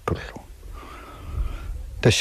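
A quiet breathy, whisper-like vocal sound of about a second from the storyteller, in a pause between his spoken phrases.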